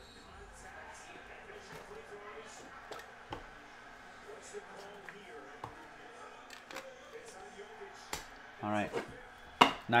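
Faint, scattered clicks and taps of trading cards and cardboard card boxes being handled on a tabletop, with a sharp click just before the end. A brief stretch of voice sounds near the end.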